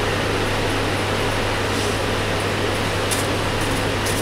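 Steady room noise with a constant low hum, of the kind a running fan or air-conditioning unit makes, with light cloth rustling about three seconds in as a cotton lawn dupatta is unfolded.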